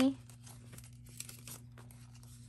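Paper banknotes being handled, giving soft, scattered crinkles and rustles as a small stack of bills is shuffled in the hands.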